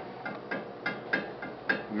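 Stock steel flex plate being rocked on the pilot of a billet torque converter cover: a series of light metal clicks, about six in two seconds. This is a good used plate with very little play in the connection.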